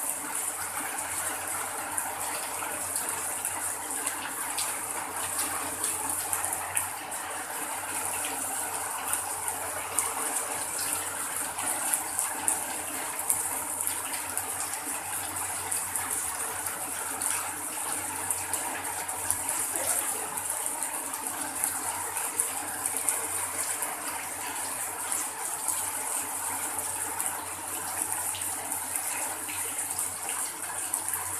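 Heavy rain falling steadily on a corrugated sheet roof and splashing onto a flooded concrete courtyard, with runoff pouring off the roof edge. A dense, even hiss sprinkled with the small ticks of individual drops.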